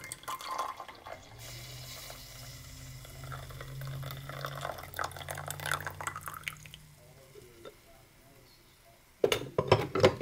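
Coffee poured in a thin stream into a glass mug of milk, a splashing, trickling pour for about seven seconds that then stops. Near the end come a few sharp, loud knocks.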